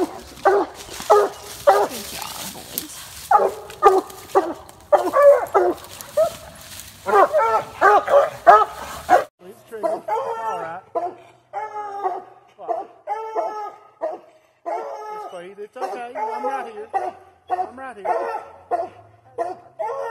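Coonhounds barking treed at a tree, calling about once a second: the sign that they have a raccoon up it. About nine seconds in the background hiss drops away abruptly and the barking carries on.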